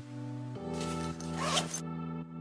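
Backpack zipper pulled open in one stroke of about a second, near the middle, over background music of held chords.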